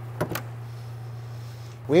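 Ford Bronco Raptor hood being unlatched and lifted: two quick sharp clicks of the latch release, then a faint steady high-pitched whir as the hood rises.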